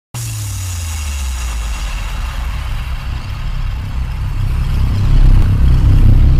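Intro sound effect for an animated logo: a deep, rumbling whoosh with a hissing wash on top. It starts abruptly and builds to its loudest near the end.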